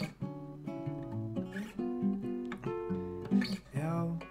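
Acoustic guitar playing a bossa nova accompaniment: a run of plucked chords changing between sung lines, with no voice.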